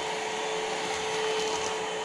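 PerySmith Kaden Pro K2 cordless stick vacuum running steadily as its powered roller head is pushed across a tiled floor picking up hair: a constant hum over an even rush of air.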